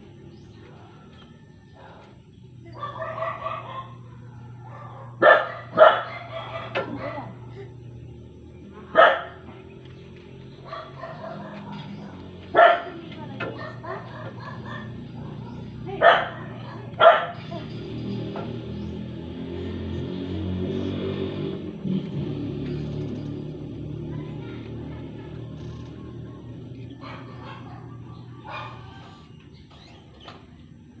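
A rooster crows about three seconds in, and a dog gives about six short single barks spread over the following dozen seconds.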